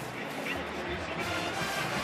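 Football stadium ambience: steady crowd noise with music playing in the background.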